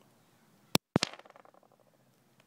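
Nitrogen triiodide contact explosive detonating as a rock lands on it: two sharp, very loud cracks about three-quarters of a second in, with the sound cutting out for a split second between them, then a short fading rattle.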